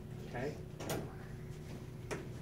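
Quiet room tone with a steady faint hum, a brief faint voice, and a single soft knock just before a second in.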